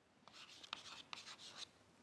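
Faint chalk scratching on a blackboard as a short word is written: a quick run of short strokes that stops shortly before the end.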